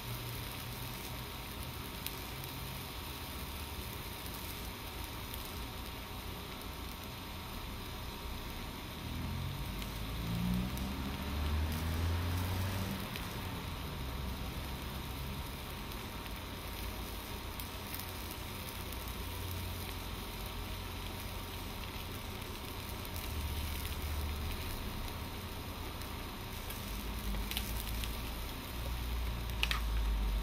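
Chicken and vegetables sizzling steadily in a hot wok over a gas burner, with a quarter cup of water added to the pan. A low rumble swells briefly about ten seconds in.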